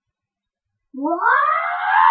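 Silence for about the first second, then a child shouting a long, rising "Wow!".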